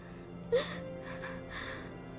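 A young girl crying: three short gasping sobs about half a second apart, over soft sustained background music.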